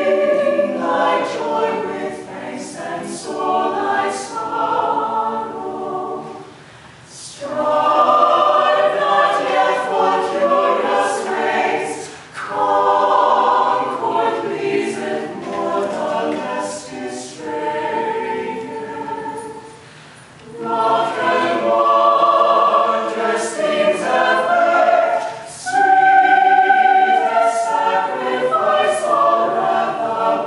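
Mixed choir singing a cappella, in phrases separated by brief breaks about 7, 12 and 20 seconds in.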